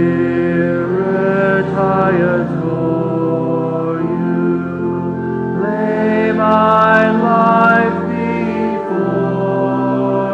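A congregation singing a hymn in long held notes, with a man's voice close to the microphone standing out. The singing swells louder in the middle phrase.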